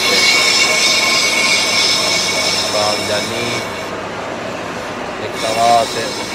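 Brake lathe facing a brake disc: the cutting tool on the spinning cast-iron disc gives a steady, high metallic squeal made of several held tones. The highest part of the squeal drops out for about a second and a half around four seconds in, then returns.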